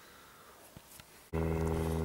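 Near silence, then about a second and a half in a steady low hum made of many even tones starts abruptly, as at an edit in the recording.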